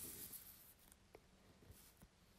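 Near silence: room tone, with one faint tick a little past a second in.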